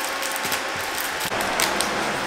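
Plastic wrap and packaging being handled, with a steady run of small crinkles and rustles.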